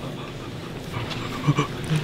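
A pause in conversation: low room noise, then a couple of short voice sounds from a young man about a second and a half in.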